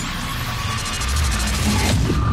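Logo intro music: an electronic piece with heavy bass under a dense hissing noise layer, ending in a sharp hit near the end as the emblem lands.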